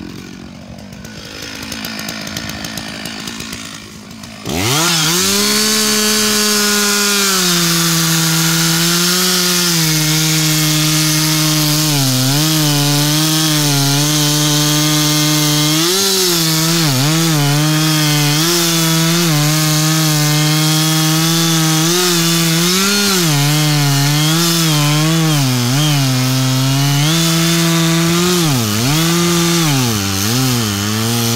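Chainsaw running at low revs for about the first four seconds, then throttled up to full speed and sawing into the base of a large beech trunk. Its pitch dips and recovers again and again as the chain bites into the wood.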